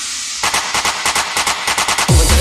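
Acid techno track in a breakdown with the kick drum dropped out: a fading noise sweep, then from about half a second in a rapid roll of sharp drum hits building up.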